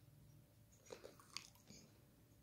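Near silence with a few faint, short wet mouth clicks from a dog, about a second in and twice more shortly after.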